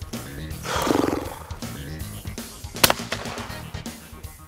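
Background music, with a brief low pitched sound about a second in and a single sharp shotgun shot near three seconds in.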